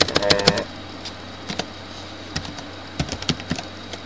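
Typing on a computer keyboard: a quick run of keystrokes near the start, then single key presses at irregular gaps, with a short run about three seconds in.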